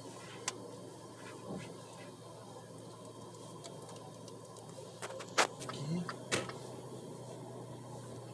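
Steady low hum of a car's engine and tyres heard inside the cabin while driving slowly, with a few sharp clicks in the second half.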